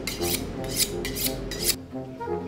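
Knife being honed on a honing rod: quick metal-on-rod scraping strokes, about three a second, which stop near the end.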